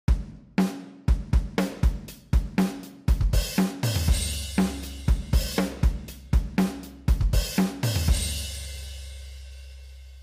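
A programmed drum-kit beat played back from a DAW pattern: kick, snare and hi-hat hitting about twice a second. About three seconds in a cymbal crash rings on, and about a second later a low sustained bass note joins. The hits stop near the end, leaving the bass and cymbal to fade.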